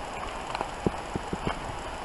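Footsteps crunching in deep snow: a run of short, irregular crunches, several in quick succession in the second half.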